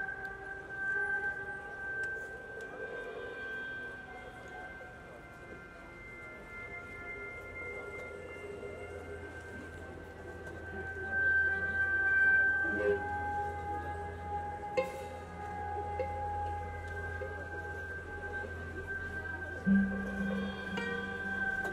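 Slow ambient electronic music from synthesizers and a loop station: several long tones held steady and overlapping, with a low hum joining about a third of the way in. A few soft clicks come around the middle, and a deep low note enters near the end.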